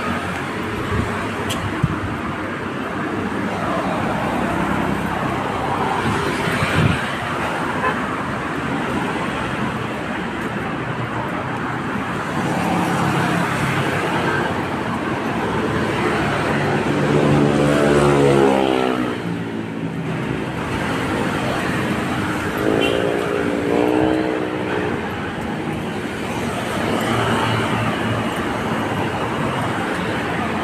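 Steady traffic noise from nearby roads, with brief pitched sounds rising and falling a little past the middle.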